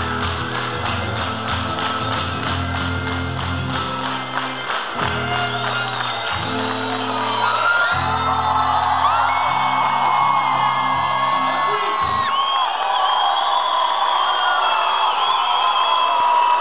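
Live band with acoustic guitar playing the closing bars of a song, a strummed rhythm over steady low chords that stops about twelve seconds in. The crowd whoops, whistles and cheers over the ending and after it.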